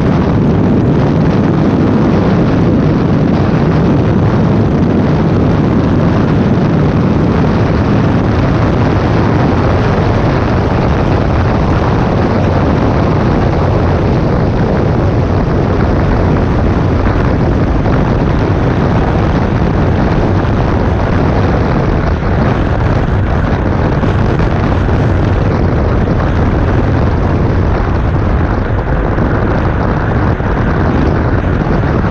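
Yamaha X-MAX 250 scooter's single-cylinder four-stroke engine running at a steady high cruising speed, under a loud, continuous rush of wind over the microphone, in a road tunnel. The sound stays steady throughout, with no shifts or revving.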